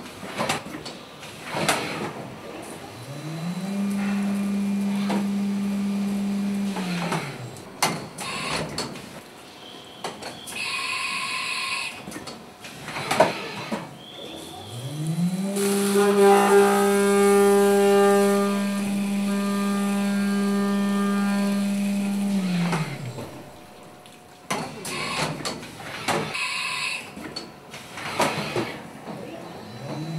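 Haas VF-2SS CNC vertical mill's spindle spinning up to a steady hum, holding for a few seconds and winding down, twice. During the second, longer run an end mill cutting aluminium adds a layered whine over the hum. Clicks and clunks from the machine come between the runs.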